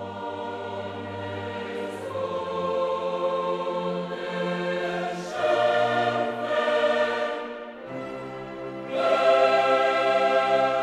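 Background music: a choir singing long held chords that change every few seconds, swelling louder about five seconds in and again about nine seconds in.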